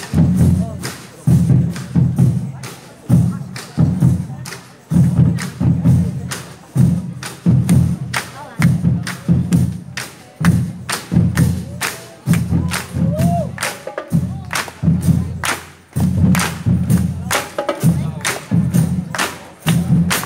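Marching percussion drum corps playing: bass drums beating a driving rhythm of loud, low hits, with sharp stick clicks in between.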